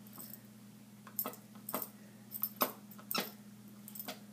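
A small dog chewing and mouthing a toy. There are about five short squeaks in the second half.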